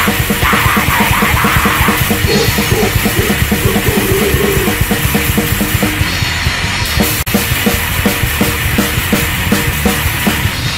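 Hardcore punk band recording: the drum kit drives a fast, steady beat under a dense wall of distorted electric guitar and bass. The sound drops out for a split second a little after seven seconds in.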